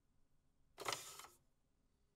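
A short, faint sound effect during a section change in the video being played: a sharp onset about a second in that fades out within about half a second.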